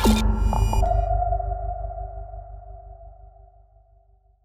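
Short electronic logo sting: a swooshing hit whose pitch falls at the start, then a held synthesizer chord over deep bass that slowly fades away.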